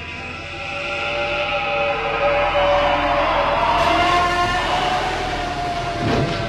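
Film sound effect of a monster's long, drawn-out screech: several sustained, slightly wavering pitches over a low rumble. It swells over the first couple of seconds and then holds.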